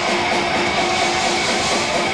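Rock band playing live: loud, dense distorted electric guitars strumming held chords, with the band going without a break.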